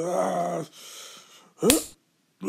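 Dubbed fight sound effects: a drawn-out martial-arts yell, then a sharp hit sound with a short rising cry about a second and a half in, as a kick lands.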